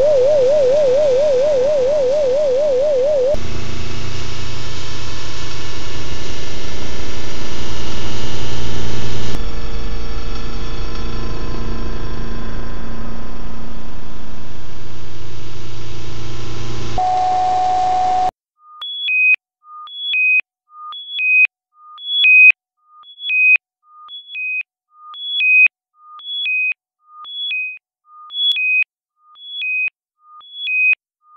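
Electronic synthesizer music: a warbling tone, then a dense buzzing drone with layered steady tones, which gives way about eighteen seconds in to a regular sequence of short beeps hopping between three pitches, about one and a half a second.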